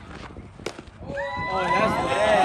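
A single sharp knock about two-thirds of a second in, then a person's long, wavering shout that starts about a second in and carries on loudly.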